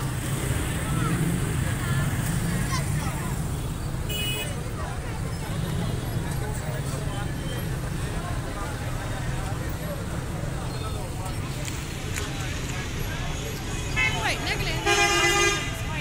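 Busy market street noise: a steady traffic rumble with background voices, a brief vehicle horn toot about four seconds in, and longer horn honking near the end.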